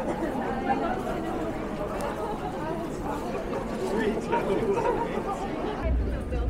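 Indistinct, overlapping chatter of several passers-by on a busy street, no single voice standing out.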